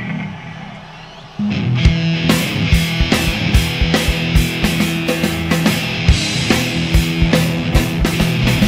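Live rock band starting a song: after a fading first second, the full band comes in about a second and a half in, with steady drum hits under a sustained guitar and bass line.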